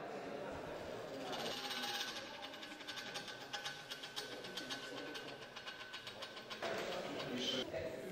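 A small geared electric motor on a hobby-built rover robot whining steadily with a fast, even ticking. It starts about a second and a half in and stops about a second before the end.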